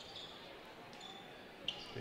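Faint basketball game sounds on a hardwood court: a few brief high sneaker squeaks over low gym background noise, the sharpest one near the end.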